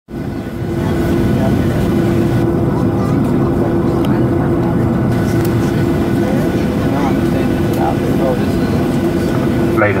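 Cabin noise of a Boeing 737 airliner taxiing, heard from a window seat over the wing: a steady, loud drone from the jet engines with a held hum running through it.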